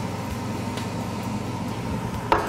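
A steady low hum and hiss, like kitchen ventilation or appliance noise, with a few faint light knocks.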